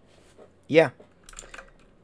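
Computer keyboard keys clicking a few times in the second half, a Ctrl+C keystroke sent to stop a running terminal program.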